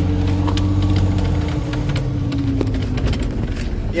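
Cab interior sound of a Cummins N14 diesel truck engine running, a steady low drone that drops away about two and a half seconds in, over scattered clicks and rattles of handling close to the microphone.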